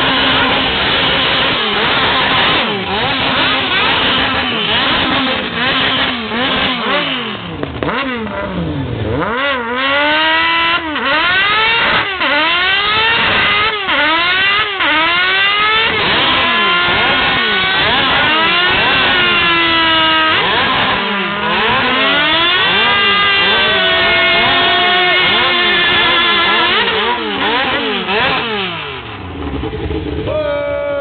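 Motorcycle engine revved hard over and over, its pitch sweeping up and down about once a second, then held at high revs for several seconds in the second half, as in a burnout.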